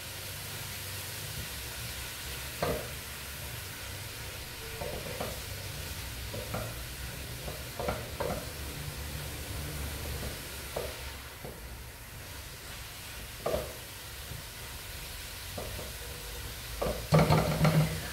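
Chopped collard greens sizzling as they sauté in lard with garlic and onion in a nonstick pot, stirred with a spatula. A steady frying hiss, with short scrapes and knocks of the spatula against the pot every second or two.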